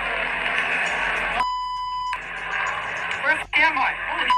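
A steady, high censor bleep about a second and a half in, lasting under a second, with the original audio cut out beneath it; around it, noisy body-camera audio with a man's voice near the end.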